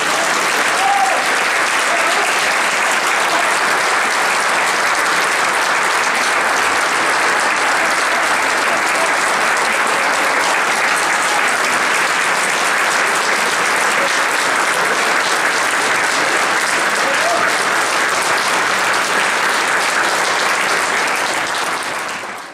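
Audience applauding, dense and steady.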